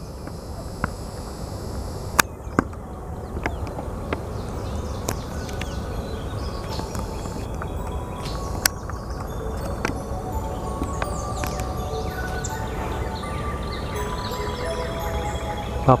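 Outdoor lakeside ambience: a steady low rumble, like wind on the microphone, with a few sharp clicks and scattered short high chirps and notes that become more frequent in the second half.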